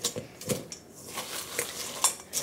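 Rubber spatula stirring chocolate-coated cereal in a metal mixing bowl: crunchy rustling with scattered light clicks and knocks against the bowl, the loudest about half a second in.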